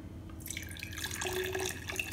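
Apple cider vinegar poured from a glass bottle into a glass cruet: liquid splashing and trickling into the glass, starting about half a second in.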